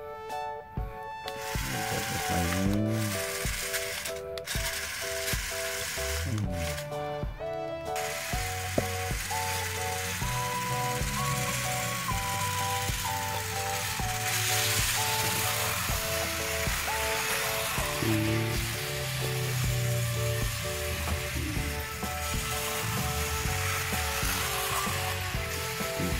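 Music with a simple melody over the whir of a small battery-powered toy-train motor and wheels running on plastic track. The whir breaks off briefly a few times in the first eight seconds, then runs steadily.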